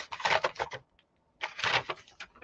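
Paper and cardboard rustling as a cardboard box is opened and a printed paper sheet is lifted off the markers inside, in two short bursts.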